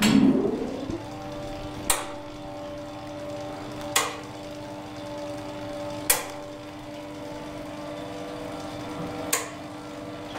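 Machinery of a 1959 ASEA traction elevator running. A loud surge at the start dies away into a steady hum, while the floor selector's contacts click sharply about every two seconds as the car travels.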